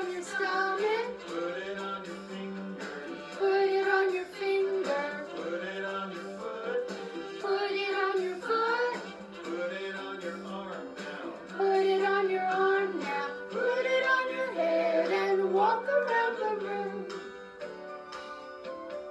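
Children's beanbag action song playing: a sung melody over a steady accompaniment that holds a low sustained tone.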